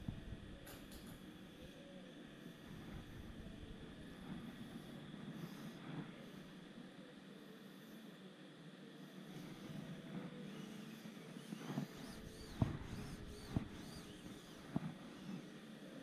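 Faint handling sounds of polyester aircraft fabric being laid onto wet cement on a wing frame and pressed down by hand, with a few light taps and clicks in the last few seconds.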